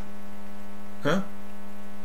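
Steady electrical hum with a stack of buzzy overtones, unchanging in pitch and level.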